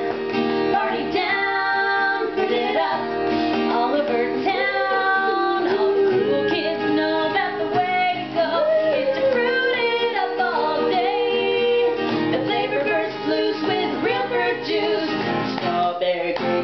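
Two women singing a jingle together, accompanied by a strummed acoustic guitar.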